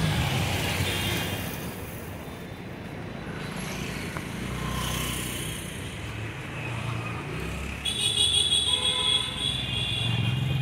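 Street traffic: car and motorcycle engines running past in a steady rumble, with a vehicle horn sounding near the end, the loudest part.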